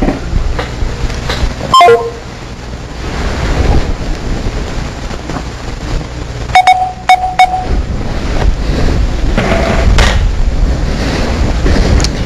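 Rumbling hiss of an open telephone line fed into the broadcast, with short electronic beeps from the handset's keys: one about two seconds in and two close together near the middle.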